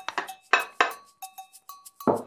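A ceramic bowl clinking and knocking against a multicooker's inner pot as chopped onion is tipped in, then the bowl is set down on the table: four or five short, sharp clinks.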